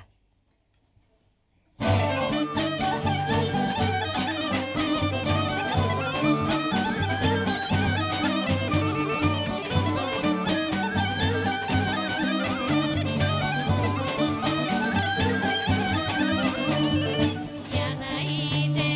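A Bulgarian folk ensemble starts an instrumental dance tune about two seconds in: a fast melody over a steady low drum beat, with a gadulka and a mandolin among the instruments.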